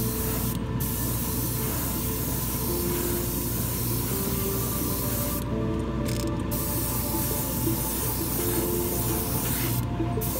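Paint spraying onto a handmade lure, a steady hiss that stops briefly about half a second in and twice around six seconds in, then starts again. Background music plays underneath.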